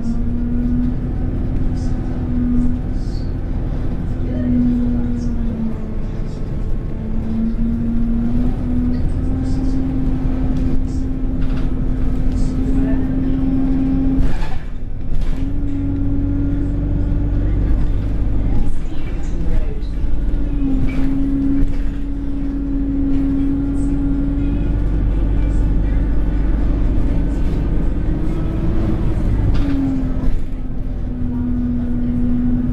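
Alexander Dennis Enviro200 single-deck bus in motion, heard from inside the cabin: a steady engine and drivetrain drone over a low rumble. Its pitch dips and recovers several times as the bus slows and pulls away again, with occasional knocks and rattles from the body.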